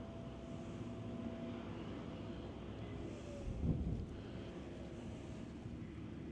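Distant combines and a tractor with a grain cart running across a field: a low steady machinery rumble with faint engine tones, one dipping slightly in pitch about three seconds in. Wind on the microphone, with a brief louder buffet at about three and a half seconds.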